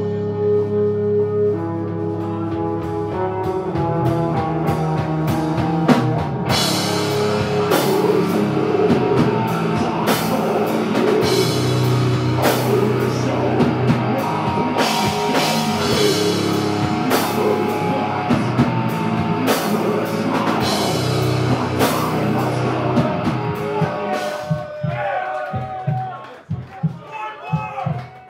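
Doom-death metal band playing loud: heavily distorted guitars and bass holding low notes, then the drum kit comes in with repeated cymbal crashes. The music thins out and breaks up near the end.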